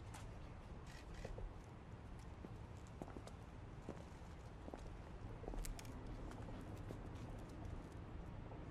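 Footsteps on stone paving with scattered light clicks, over a steady low outdoor rumble.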